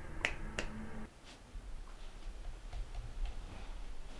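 Fingers snapping: two sharp snaps about a third of a second apart, then a fainter third.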